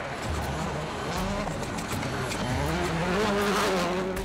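Citroën Xsara WRC rally car's turbocharged four-cylinder engine revving hard at speed. Its note dips and climbs again through gear changes over the rush of tyres on loose gravel.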